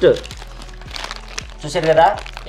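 White wrapping crinkling and rustling as a small miniature vessel is unwrapped by hand, with short crackles.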